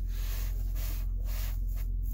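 Steady cabin sound of a 2019 Chevrolet Equinox with its 2.0-litre engine running: a low hum with a faint airy hiss over it.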